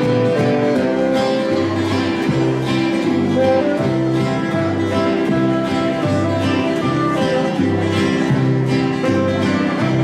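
Country instrumental played by an acoustic jam group: strummed guitars keep a steady beat over bass notes alternating about every second, with held melody notes above.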